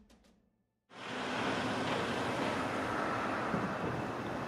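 The last of a music track dies away into a brief near-silence. About a second in, a steady rushing outdoor background noise starts and holds evenly.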